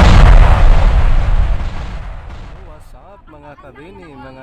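A loud booming, explosion-like sound effect from an animated subscribe bumper, heavy in the low end, dying away over about two seconds. A faint voice follows near the end.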